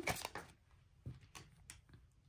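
Faint handling of tarot cards: a few soft clicks and rustles as cards are fanned out and one is drawn and laid down on a cloth.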